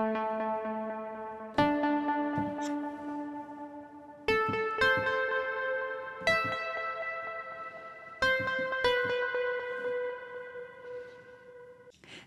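Arturia Analog Lab V's 'Analog Unison' plucked-keys synth preset played on a keyboard: about seven notes struck one after another, each starting bright and fading slowly. The sound has a little echo and delay.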